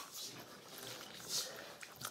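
Faint handling noise as a plastic sauce packet is squeezed out onto a burrito, with paper wrapper rustling; a short, louder crinkle a little over a second in.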